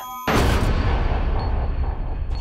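A sudden loud cinematic boom about a quarter second in, after a brief drop-out, followed by a sustained deep rumble under the trailer score.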